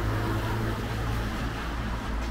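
Steady low hum of city street traffic with a background hiss; the hum eases about one and a half seconds in.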